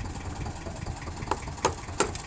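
Fishing boat's engine idling: a steady low rumble, with two short sharp clicks late on.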